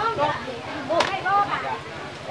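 People talking, with one sharp crack about a second in.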